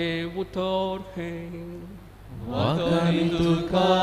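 A man's voice chanting liturgical text on one steady note, in phrases, with a short break about two seconds in before the voice slides back up to the note.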